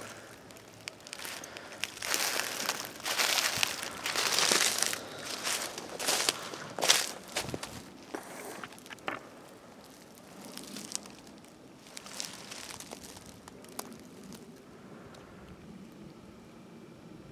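Footsteps crunching through dry leaf litter, with loud crackling steps and a few sharp snaps in the first half, then only faint rustling.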